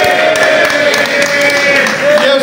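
A crowd of men's voices chanting in unison, with long drawn-out held vowels, and a few scattered claps.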